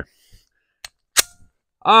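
Two metallic clicks from the Ruger Security-9 Compact 9 mm pistol being handled: a light click, then a sharper, louder clack a moment later with a brief ring.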